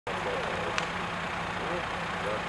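Fire engine running steadily with a low hum, under faint distant voices. A single sharp click sounds just under a second in.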